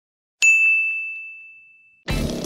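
A single high, bell-like ding, struck about half a second in and fading away over about a second and a half: the chime of a logo intro.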